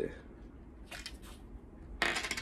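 Faint clicking and scraping of small plastic parts about a second in, as the battery compartment of a Joseph Joseph TriScale folding kitchen scale is handled.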